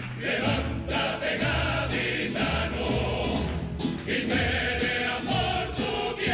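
Cádiz carnival coro, a large male chorus, singing in harmony, accompanied by a double bass and plucked guitars.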